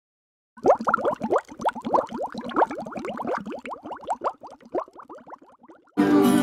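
Wine glugging out of a bottle as it is poured, a quick run of rising gurgles, about six a second, that starts about half a second in and slows and fades toward the end.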